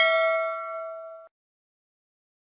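Bell-like ding sound effect from a subscribe-button animation: one ringing tone with overtones, fading, then cut off suddenly just over a second in.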